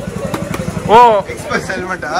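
A small go-kart engine running with an even low pulsing that fades about halfway through. About a second in, a voice lets out a loud, drawn-out exclamation that rises and falls in pitch.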